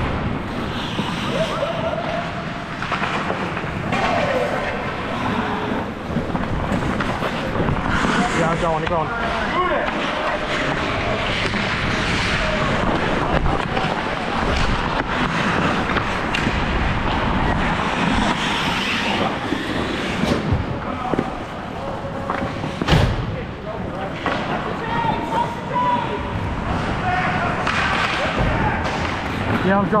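Hockey skate blades scraping and carving on the ice during play, with players calling out over it and a single sharp knock about two-thirds of the way through.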